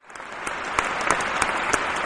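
Applause from a crowd, many hands clapping together, swelling up over the first half second.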